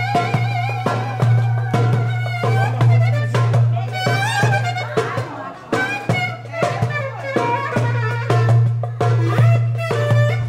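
Live clarinet playing an ornamented folk melody with a wavering vibrato, over a large drum beaten in a steady rhythm.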